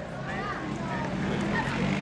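Faint voices in the background over a low, steady engine drone of race-track ambience.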